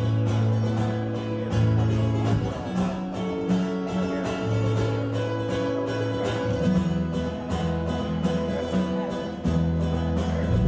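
Live band music: guitar strumming chords over held low bass notes, the instrumental opening of a song with no singing yet.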